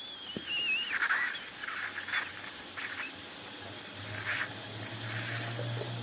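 A high, wavering whistle that fades out about a second and a half in, followed by faint hissing and a low steady hum, from the operating-room sound of the surgery.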